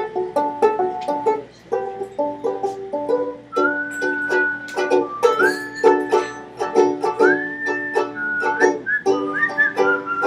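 Banjo picked in a steady repeating pattern. About three and a half seconds in, a person joins it whistling a melody that glides between held notes.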